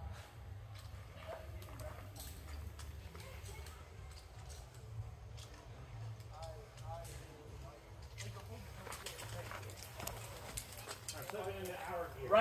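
Faint, indistinct voices with scattered light clicks and a low steady rumble underneath.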